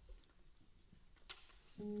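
Quiet stage with one brief sharp sound a little past halfway, then near the end the jazz combo comes in with a sustained chord as the tune begins.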